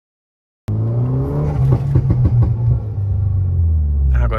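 Turbocharged four-cylinder engine of a VW Jetta TSI with a 3-inch stainless downpipe, heard from inside the cabin under hard acceleration. The sound cuts in suddenly under a second in, the engine note climbs, then drops to a lower pitch about two and a half seconds in.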